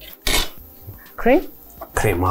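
Cutlery and plates clinking as food is served onto a plate, with a short rising vocal sound partway through.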